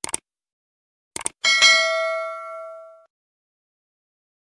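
Subscribe-button animation sound effect: a quick pair of clicks, another pair about a second in, then a bright bell ding that rings out and fades over about a second and a half.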